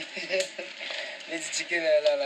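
Speech: a woman talking in French.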